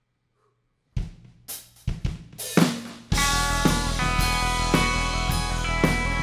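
A live rock band's drum kit opens a song with a handful of separate snare, kick and cymbal hits after a second of quiet. About three seconds in, the full band comes in at once with bass, guitar and held keyboard chords, and the music carries on steadily.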